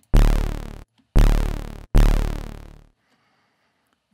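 Serum software-synth bass patch built from two sawtooth oscillator layers, one of them eight-voice unison, playing three low notes about a second apart. Each note starts sharply and fades away in under a second, shaped by a fast-attack, one-second-decay envelope with no sustain. The sound is bright and buzzy because no filter is on yet.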